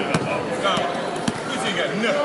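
A basketball bouncing on a hardwood gym court: a few sharp bounces, with voices talking in the background.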